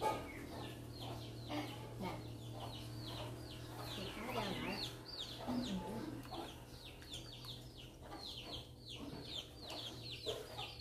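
Birds chirping continuously: quick, high chirps that each fall in pitch, several a second, over a steady low hum.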